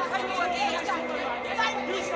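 Several voices shouting and talking over one another in an agitated argument, the words indistinct, over a steady hum.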